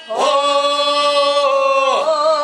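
Unaccompanied singing: one long held note that starts just after the opening and holds steady, moving to a new note near the end.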